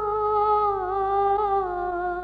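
Unaccompanied solo voice singing an Urdu naat, holding one long note that sinks slowly in pitch with a slight waver.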